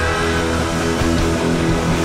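Live rock band playing an instrumental passage, with electric guitar and bass over a steady, loud full-band sound.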